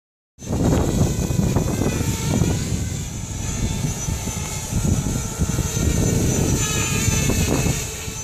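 Small quadcopter drone's motors and propellers whining faintly, the pitch wavering as it lifts off and flies out over the field, under a loud, uneven low rumble.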